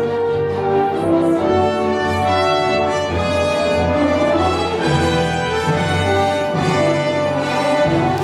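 Orchestra playing a film-score cue, strings and brass together in held chords and melody.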